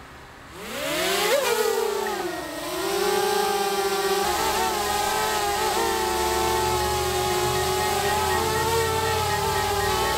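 DJI Mavic Air quadcopter's motors and propellers spinning up about half a second in with a rising whine, then settling into a steady buzzing hum as the drone lifts off and hovers.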